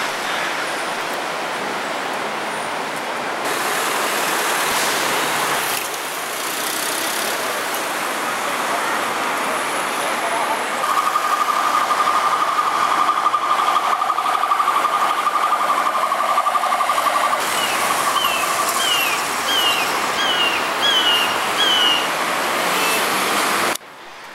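Busy city-avenue traffic: a steady wash of car and truck noise. A steady high tone sounds through the middle, and near the end about six short rising chirps come in quick succession. The traffic sound cuts off suddenly just before the end.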